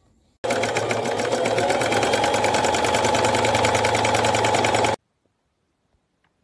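Sewing machine running at a steady speed, a rapid, even stitching clatter that cuts in sharply about half a second in and stops abruptly about a second before the end.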